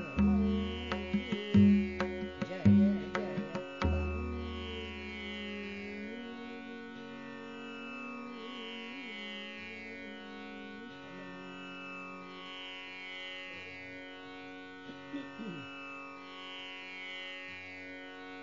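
Tanpura drone sounding steadily under deep tabla strokes; the strokes stop about four seconds in, leaving the drone on its own.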